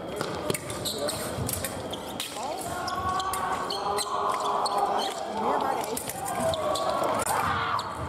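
Fencers' quick footwork on the piste, with short thuds of stamping and landing feet and scattered sharp clicks, over voices echoing in a large hall.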